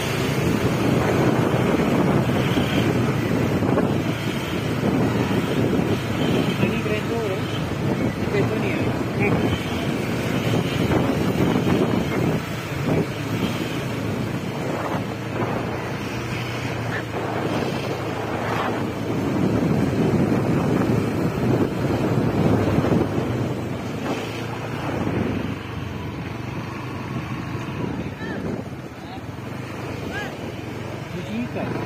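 Wind buffeting the microphone on a moving motor scooter, with the scooter's engine and street traffic underneath, rising and falling in strength.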